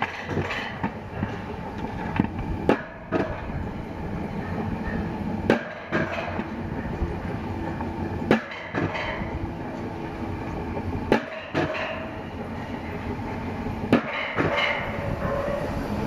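Mountain coaster sled rolling down its tubular steel rails with a steady rumble. Sharp clacks come about every three seconds as the wheels cross the rail joints.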